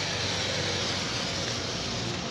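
Steady road traffic noise, an even hiss and hum of vehicles with no distinct event standing out.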